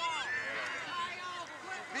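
Voices calling out at a youth soccer game, high-pitched and shouting, with a man beginning to shout just before the end.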